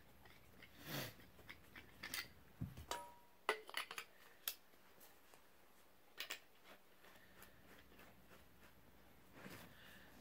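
Scattered light metallic clicks and clinks from a folding survival shovel's knife piece being handled and fitted onto the threaded end of a handle section, the busiest run of clicks about three to four and a half seconds in.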